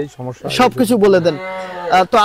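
A man talking in Bengali, ending on a long vowel held at one level pitch for about half a second.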